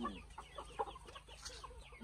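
Young Burmese gamecocks clucking in a quick, irregular run of short, quiet clucks.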